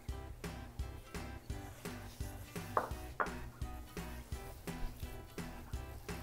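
Light background music with a steady, even beat. Two brief short sounds come close together about three seconds in.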